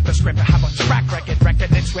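Hip hop track: rapping over a steady bass line and drum beat.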